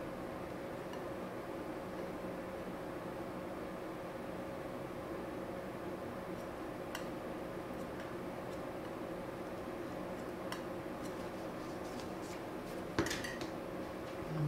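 Metal palette knife mixing acrylic paint on a plastic palette tray: faint scraping and a few light clicks over a steady room hum, with one sharper click near the end.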